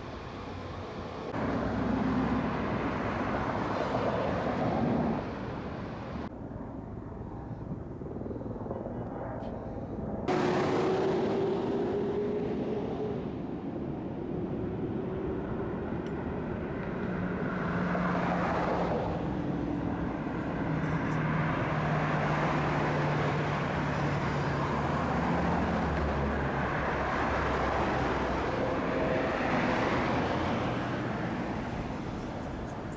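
Street traffic on a busy city boulevard: cars and other vehicles passing with a steady hum of engines and tyres, the sound changing abruptly a few times as the shots change.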